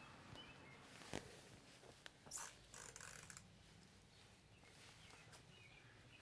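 Near silence: faint outdoor ambience, with a single soft click about a second in and a few brief rustles a little later.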